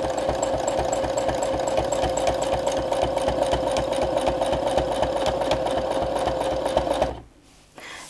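Brother domestic sewing machine stitching steadily at an even, fast rate while free-motion quilting, the fabric guided by hand under a spring-loaded free-motion foot. The machine stops suddenly near the end.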